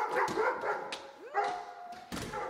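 A husky whining and yipping in short calls, then a longer whine that rises and holds near the end.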